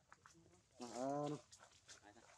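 A macaque giving one short call about a second in, rising then falling in pitch.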